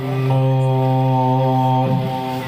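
A man's voice in melodic Quran recitation (tilawat) through a microphone, holding one long, steady note on the drawn-out close of a verse.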